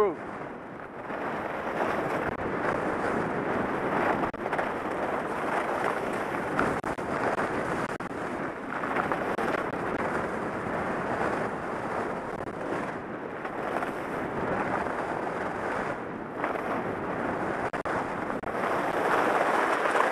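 Wind rushing over the microphone mixed with skis carving and scraping on groomed snow during a run, a steady rushing noise with small swells.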